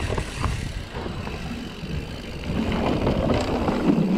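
Mountain bike riding fast down a dirt singletrack, picked up by an action camera: wind rushing over the microphone, tyres on dirt and the bike rattling and knocking over the bumps. It grows louder about two and a half seconds in as speed builds.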